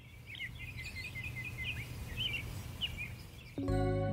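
Songbirds chirping in quick short calls over a low steady hum, thinning out after about three seconds. Background music comes in suddenly near the end.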